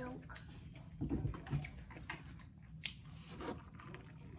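A person chewing food close to the microphone, with a few light clicks scattered through.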